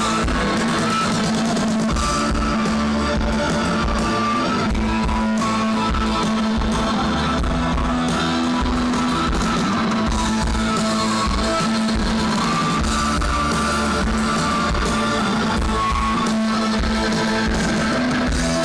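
Live rock band playing loud and steady, electric guitar over a drum kit, recorded from the audience.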